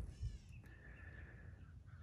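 A faint, drawn-out animal call, held at one steady pitch for under a second, starting about half a second in.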